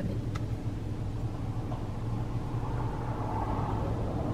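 Car engine running at low speed, a steady low hum heard from inside the cabin, with one faint click near the start.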